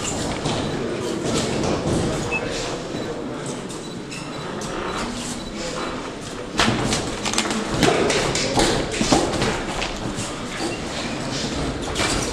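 Thuds and slaps of boxing gloves landing in a sparring exchange, mixed with footwork on the ring canvas, echoing in a large hall. The blows come thicker and louder from about six and a half seconds in.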